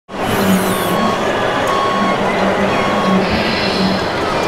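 Loud, steady noise of a busy model show hall, with a low hum that pulses on and off and a few short, steady high beeps from the running models.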